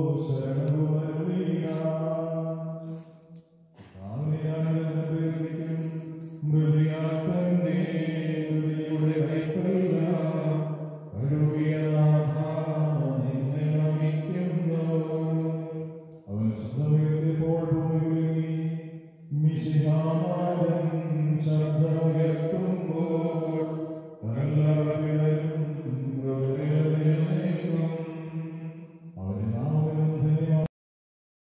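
A priest chanting a liturgical prayer into a microphone, one male voice held on a near-steady reciting pitch. He sings in long phrases of a few seconds each, with short pauses for breath between them.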